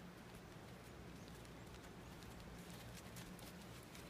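Faint hoofbeats of a horse walking on gravelly arena footing: soft, scattered crunching steps that come more often in the second half.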